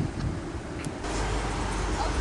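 Low, steady outdoor rumble that grows stronger about halfway through, with a brief click a little before that.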